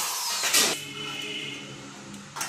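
Corded electric drill spinning down after the trigger is released, its whine falling in pitch, then a sharp knock about half a second in, followed by faint ringing.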